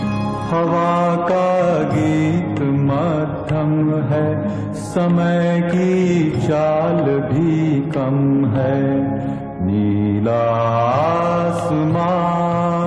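A Hindi film song playing: a voice singing long, gliding phrases over steady instrumental accompaniment.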